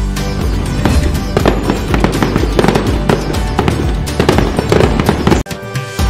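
Fireworks crackling and popping in quick, irregular snaps over background music. Both break off suddenly for a moment about five and a half seconds in.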